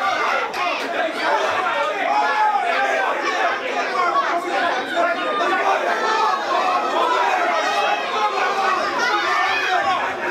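A boxing crowd chattering and shouting, with many voices overlapping all the time and none standing out.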